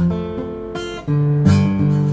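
Acoustic guitar strummed in a slow rhythm, its chords ringing between strokes, with a new chord struck about a second in.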